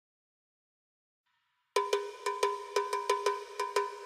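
Silence, then about two seconds in, a ringing metal percussion instrument starts being struck in a fast, even beat, about six strikes a second, as a count-in to a heavy metal track.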